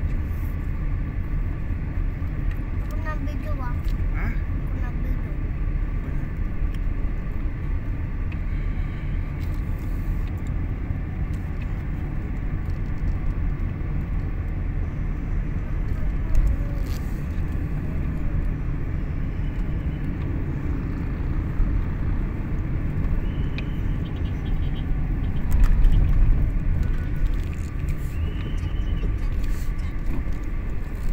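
Steady low rumble of road and engine noise inside a moving car's cabin, swelling briefly near the end.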